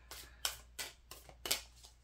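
Tarot cards being shuffled by hand: a run of about six crisp card snaps, roughly three a second.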